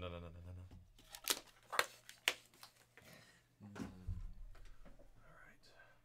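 A trading-card box and cards being handled on a table: four sharp clicks and taps in quick succession, between about one and two and a half seconds in.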